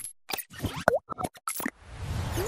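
Animated-graphics sound effects: a quick run of about seven or eight short pops and plops in under two seconds, one with a bending, boing-like pitch near the middle.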